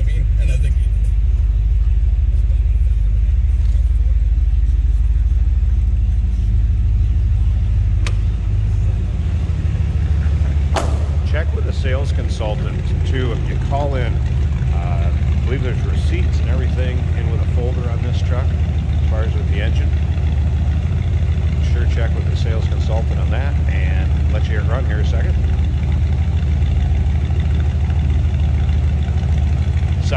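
A 1984 Dodge D150 pickup's engine idling steadily with a low rumble. About nine seconds in, its tone changes as the sound moves from inside the cab to outside beside the truck.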